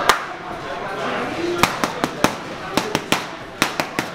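Boxing gloves striking a trainer's handheld paddles in quick combinations: about ten sharp smacks, with most of them bunched in the second half.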